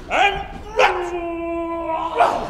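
A man's voice crying out in exaggerated slapstick fashion: a short yelp, then just under a second in, a long, drawn-out wail held at one pitch.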